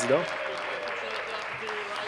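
Members of a legislature applauding from their seats, with voices talking underneath the clapping.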